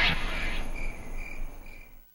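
Crickets chirping about twice a second over a soft hiss, fading out near the end.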